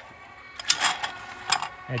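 Atlas-150 wobble clay target trap running in its non-stop mode, its motors keeping the trap constantly moving: a faint steady mechanical whir with several sharp clacks.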